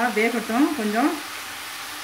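Elephant foot yam cubes sizzling as they fry in an open pan, a steady hiss. A voice is heard over it for about the first second.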